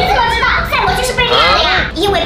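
A young woman's voice talking quickly and high-pitched.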